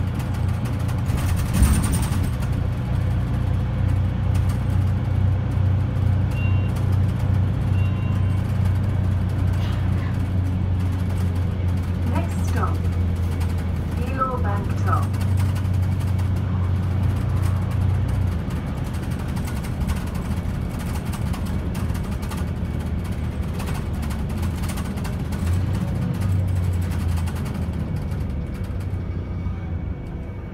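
Interior of a Mercedes-Benz Citaro O530 single-deck bus under way: a steady low diesel engine drone with road and body rattle noise. There is a knock about two seconds in, and the engine note falls away after about 18 seconds, returning briefly around 25 seconds.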